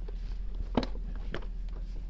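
A few short clicks and knocks from handling a telescoping aluminium mop pole as it is extended, locked and raised, the loudest about a second in, over a steady low hum.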